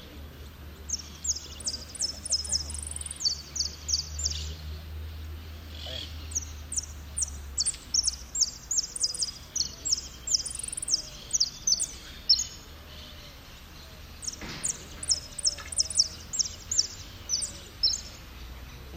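A jilguero (a South American finch) singing in runs of rapid, high, sharply falling notes, with a short pause about two-thirds of the way through. A steady low rumble lies underneath.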